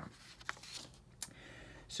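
Faint handling noise in a quiet small room: a couple of soft clicks and a light rustle.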